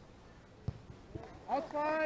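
A single sharp knock about two-thirds of a second in, then a loud shouted call near the end.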